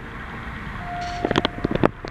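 Otis traction elevator answering a hall call: one steady electronic arrival beep about a second long, then a quick run of clicks and knocks as the doors start to open.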